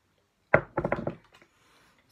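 Knocks from an object handled on a hard surface: one sharp knock about half a second in, then a quick run of smaller knocks over the next half second.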